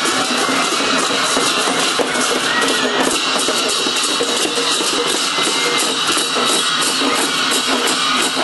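Continuous music with a fast, steady beat of sharp strikes.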